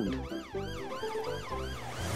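Police car siren wailing, its pitch sweeping up and down about three times a second.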